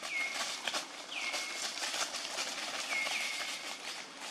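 A high call repeated about three times, each one dropping sharply and then held level for about half a second. Underneath run a steady hiss and scattered crackles, as of feet moving through dry leaf litter.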